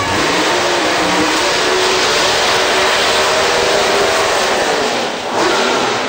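Pro Stock drag car's V8 held at high revs during a burnout, its rear slicks spinning on the tarmac. It is a loud, steady roar for about five seconds that dips and then drops away near the end.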